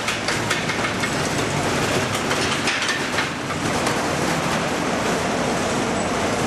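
Roller coaster train running along its steel track, wheels rumbling and clattering, with repeated short clacks in the first few seconds over a steady fairground din.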